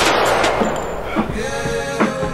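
A single gunshot sound effect as the beat cuts off, its echo dying away over about a second.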